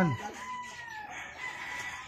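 Roosters crowing in the background, long drawn-out calls that overlap one another. These are gamecocks kept for cockfighting.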